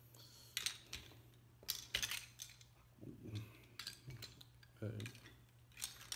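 Plastic VEX construction-set parts clicking and clattering as they are handled and fitted together by hand: a string of sharp, irregular clicks.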